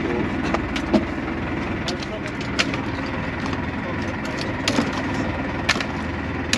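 A boat's engine idling with a steady low hum, while scallop shells clack sharply now and then as they are tossed into a plastic crate, about six times.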